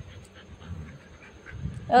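A large dog panting softly while it is stroked, followed near the end by a woman's voice.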